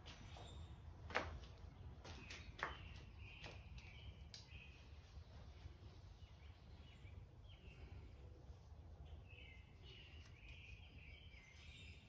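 Near silence: faint room tone with a few soft handling clicks.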